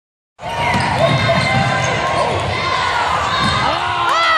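A basketball dribbled on a hardwood gym floor during a fast break, under steady crowd noise and shouting from the bleachers. The sound starts a moment in, and the crowd's voices rise near the end as the shot goes up.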